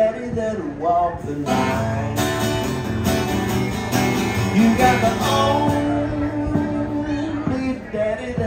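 Acoustic guitar strummed in a steady country rhythm, with a man's voice carrying a melody over it.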